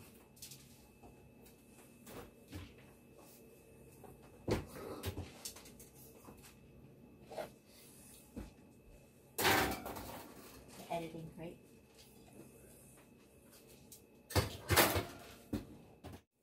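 Scattered clunks and knocks of an oven door and metal pizza pans as pizzas are put into the oven, the loudest about halfway through and again near the end, with quiet kitchen room sound between.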